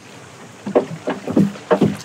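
A wooden fishing boat on the water: a run of short knocks and splashes against the hull over a steady hiss, starting a little under a second in.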